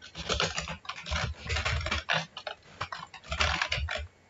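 Typing on a computer keyboard: fast runs of key clicks, with a brief pause a little past the middle.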